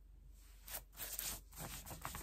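Rustling, scratchy noise from fingers working through a curly synthetic wig, in several short bursts starting about half a second in.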